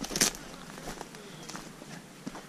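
Footsteps on dry, stony dirt and leaf litter: a few irregular steps, the loudest just after the start.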